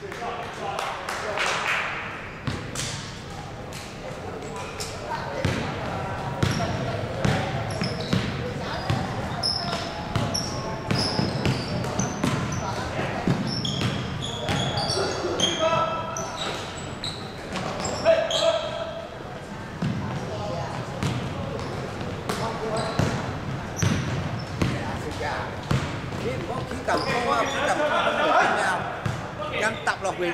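Basketball bouncing on a hardwood court during play, with repeated sharp thuds and players' voices calling out in a large echoing sports hall.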